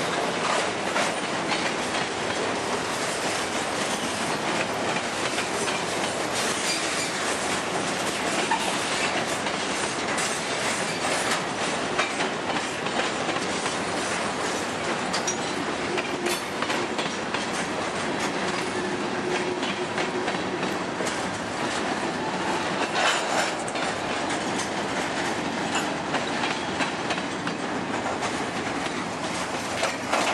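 Open-top hopper cars of a freight train rolling steadily past, a continuous rumble of steel wheels with a rapid clatter of clicks as they run over the rail joints.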